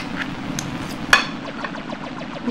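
A fork clinks once on a plate about a second in, over a steady low background hum.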